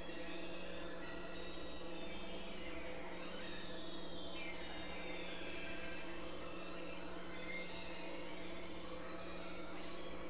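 Dense, layered experimental electronic drone music. A steady low drone and several held middle tones sit under high tones that glide slowly downward, with a noisy haze throughout and no beat.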